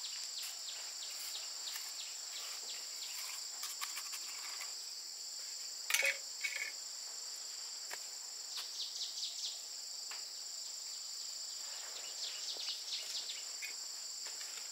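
Steady high-pitched chorus of insects, with scattered knocks, taps and scrapes of a mason's trowel and concrete blocks as mortar is spread and a block is set. The loudest knock comes about six seconds in, and there are runs of quick taps a little past the middle and again near the end.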